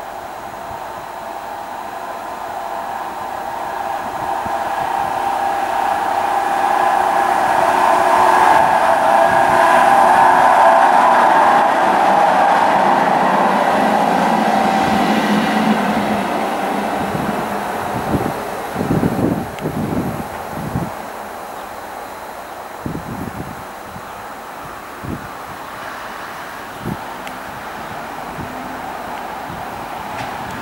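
Two diesel locomotives, BB 75095 and BB 60175, passing on the line: their engines build up as they approach, are loudest about ten seconds in, then fade away. A run of low thumps follows near the end of the pass.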